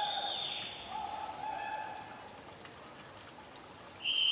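Hubbub of an indoor swimming-pool hall, with two long high-pitched calls ringing out: one fades out just after the start, the second comes about a second in and lasts about a second.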